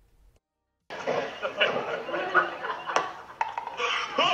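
Near silence for about a second, then a sudden busy mix of voices talking and laughing, with one sharp knock about three seconds in.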